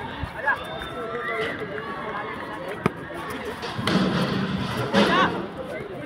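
Players and onlookers calling out during a kabaddi raid, with louder shouts about four to five seconds in and a single sharp knock near the middle.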